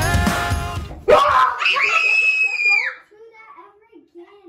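Background music stops about a second in. A girl then screams loud and high-pitched for about two seconds, the pitch sagging at the end, followed by faint murmuring.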